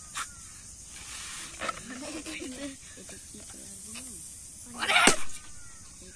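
A child blowing up a latex balloon by mouth, breath hissing into it, with one loud rush of air about five seconds in.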